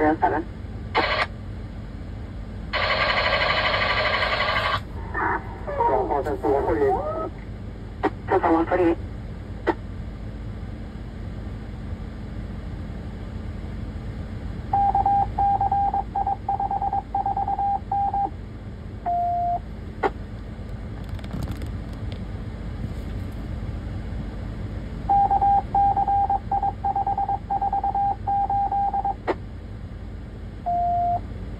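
Police radio traffic: a garbled voice with a two-second burst of static in the first few seconds. Later come two runs of rapidly pulsing beeps, each lasting about three seconds and ending in one lower beep, over a steady low hum.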